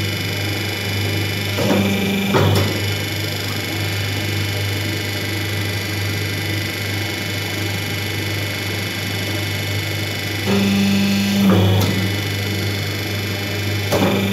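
Hydraulic paper plate making machine running, its electric motor and hydraulic pump humming steadily. Twice, a second, louder hum comes in for about a second and ends in a clunk as the die cycles.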